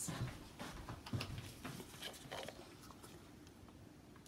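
Light knocks, clicks and taps of hands handling a small bottle of alcohol, as it is picked up and opened to be added to the paint, mostly in the first two and a half seconds.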